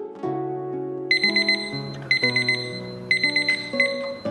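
Digital countdown timer's alarm going off as it reaches zero: three bursts of rapid high-pitched beeps about a second apart. Background music with plucked strings plays underneath.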